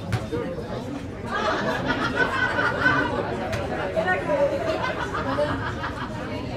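Indistinct chatter of several voices talking over one another, louder from about a second in: football players and coaches talking during a break in play.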